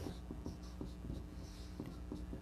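Dry-erase marker writing on a whiteboard: faint, short scratchy strokes.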